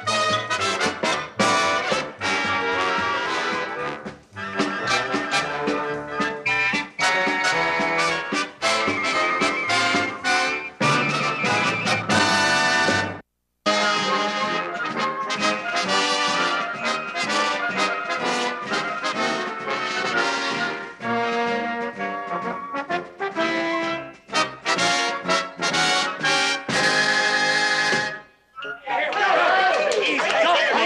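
Brass-band television theme music, trumpets and trombones to the fore. It drops out for a split second about halfway through, and stops shortly before the end, where voices take over.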